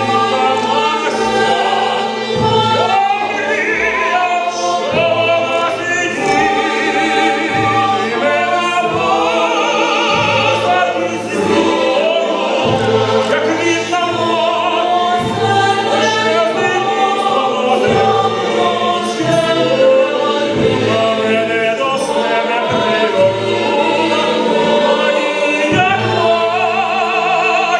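A mixed choir and male soloists singing in operatic style, with vibrato, accompanied by a symphony orchestra.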